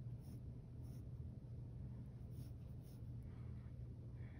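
Faint scratching of a mechanical pencil on sketchbook paper, a few light strokes, over a low steady hum.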